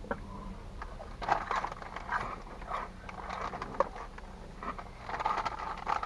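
Crunchy Cheetos Cheddar Jalapeño corn snacks being chewed close to the microphone: irregular crunches and crackles, over a faint steady low hum.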